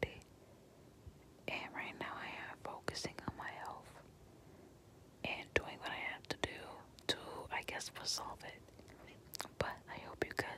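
Close-miked whispered talking in two stretches, with small sharp clicks between the words and quiet pauses around the start and about four to five seconds in.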